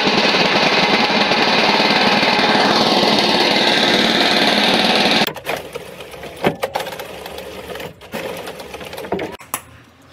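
Brick-paving machine running with a loud, dense, fast rattle as bricks clatter down its steel chute. About five seconds in it stops abruptly, and a quieter stretch follows with a few separate sharp clacks.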